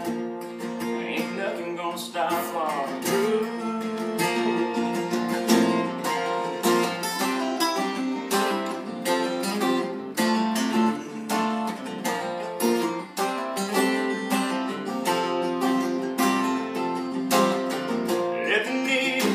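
Two acoustic guitars playing an instrumental break in a steady rhythm. One, a Takamine, strums chords while the other picks a lead line.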